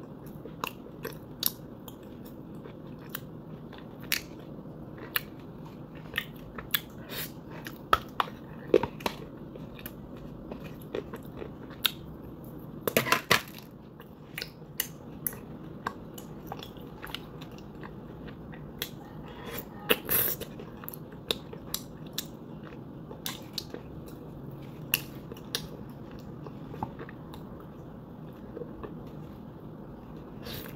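Close-up biting and crunching of dry, chalky clay chunks: irregular sharp crunches throughout, with louder bursts of crunching about 13 seconds in and again around 20 seconds, over a steady low hum.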